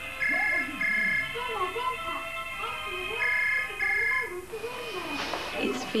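Home landline telephone ringing in the British double-ring pattern: two short rings in quick succession, repeated about three seconds later, over soft background music.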